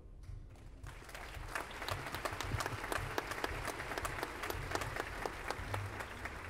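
Audience applauding, starting about a second in and going on steadily as dense, irregular clapping.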